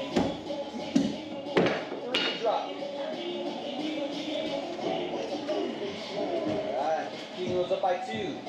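Thrown hatchets striking wooden axe-throwing targets: a few sharp knocks between about one and two seconds in.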